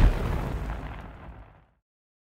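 An explosion-like fire sound effect: a deep, rushing rumble with hiss above it. It is loudest at the start and dies away over about a second and a half, then stops.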